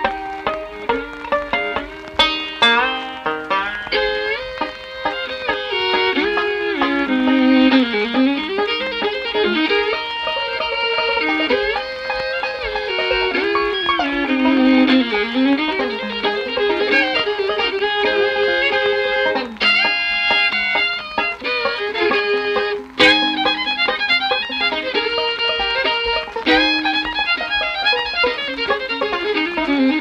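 Fiddle and five-string banjo playing a bluegrass instrumental together. Plucked banjo notes stand out at the start, and from a few seconds in the bowed fiddle carries the lead over the banjo, with several notes dipping in pitch and sliding back up.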